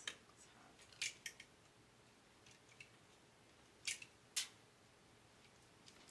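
Clothes hangers clicking against a wire closet rod as garments are pushed along it: a few short, sharp clicks, loudest about a second in and again around four seconds in.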